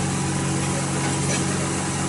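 A motor running steadily, a constant low hum with a faint higher whine and no change in speed.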